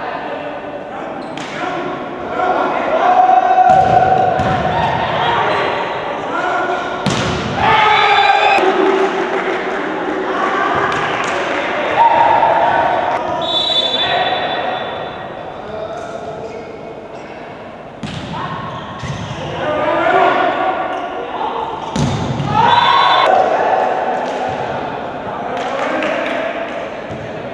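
Volleyball match play: the ball is struck and bounced on the court floor several times, sharp thuds ringing in a large hall, among players' shouts and calls.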